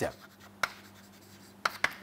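Chalk writing on a chalkboard: a sharp tap about half a second in, then a few quick strokes near the end.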